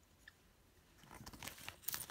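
A thin plastic bag crinkling and pieces of costume jewelry clicking against each other as a hand rummages in the bag, starting about a second in.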